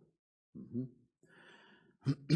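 A man's brief voiced sound, then a soft audible breath close to a handheld microphone.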